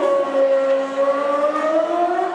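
A man's amplified voice over a hall PA, drawing out a fighter's name in one long held note that slowly rises in pitch, in the stretched-out style of a ring announcer.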